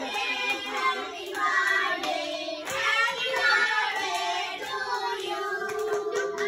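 A group of children singing together in unison, with hand clapping.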